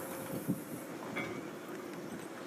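Faint, steady outdoor background noise, a low rumbling hiss, with a light click at the very start and a small tick about half a second in.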